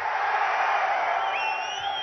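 Large rally crowd cheering and shouting in a steady wash of voices, with a thin high tone rising briefly about one and a half seconds in.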